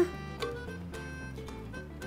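Background music: a light instrumental with plucked string notes over a steady low bass.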